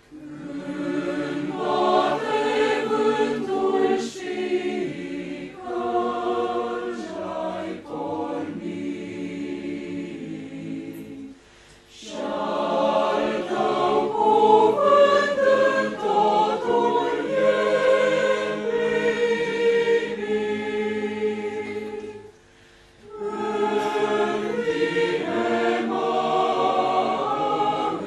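Church choir singing, the voices coming in right at the start, with two short breaks between phrases about 11 and 22 seconds in.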